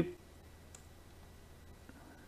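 Quiet room tone with a low hum and a few faint clicks, just after the last spoken word fades out at the very start.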